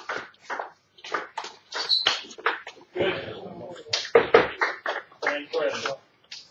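Table tennis rally: a celluloid ball struck back and forth by bats and bouncing on the table, short sharp clicks about every half second, with a voice-like stretch about halfway through.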